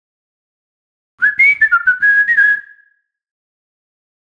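A short whistled jingle of quick stepped notes, with light percussive hits under it. It starts about a second in and ends on a held note that fades out.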